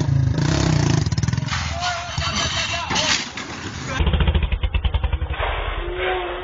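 Motorcycle engine revving hard as the overloaded bike pulls away and rears up, with people's voices shouting around it. The engine's pulsing run starts again about four seconds in.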